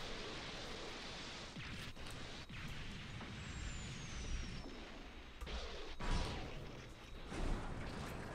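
Sound effects of an animated battle: a steady rumbling noise of aircraft and explosions, with a few sharp impacts and one falling whistle a few seconds in.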